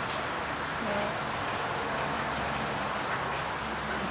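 Steady background noise with faint, indistinct voices of people, one brief voice about a second in.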